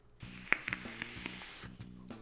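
A vape being fired and drawn on: a high hiss of air and sizzling coil for about a second and a half, with one sharp crackle about half a second in and two smaller ones just after. Background music with steady low tones runs underneath.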